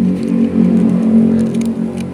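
A steady engine-like drone, such as a motor idling, with fine sandpaper rubbing lightly on the metal of a sewing machine's thread guide.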